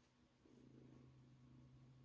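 Near silence, with a faint low hum from about half a second in.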